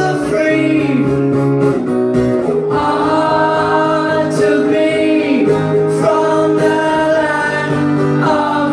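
Acoustic guitar strummed with a male voice singing a held melody over it, the singing breaking off briefly a little after two seconds in before coming back.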